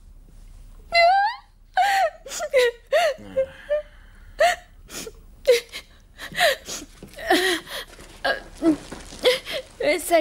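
A woman crying: short, high-pitched whimpering sounds with wavering pitch, broken by brief pauses.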